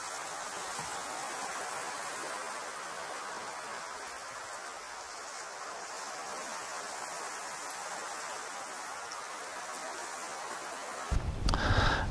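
Steady, even background hiss with no distinct events. About a second before the end a louder low rumble comes in.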